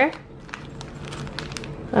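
Soft rustling and crinkling of a plastic pocket-letter sleeve and the paper cards inside it being handled, with scattered light clicks.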